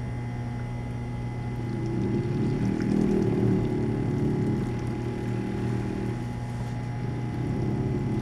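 Benchtop vortex mixer running in touch mode with a plastic tube of natto and sterile water pressed onto its cup: a steady low motor hum that grows louder and rougher about two seconds in as the tube's contents are whirled into a suspension.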